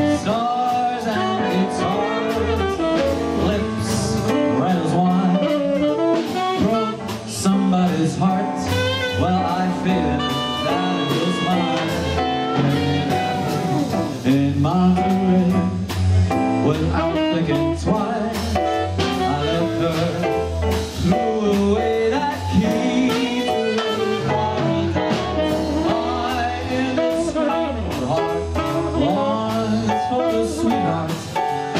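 A small live jazz-blues band playing: a male lead vocal over keyboard, double bass and drums, with saxophone.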